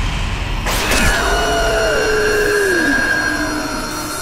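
Horror-film scare sting: a sudden loud hit with a deep rumble, then a second crash about a second in, with several screeching pitches sliding downward over a held high whine.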